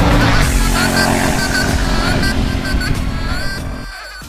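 Electronic music with a Honda Africa Twin CRF1100's parallel-twin motorcycle engine running underneath it, getting quieter toward the end.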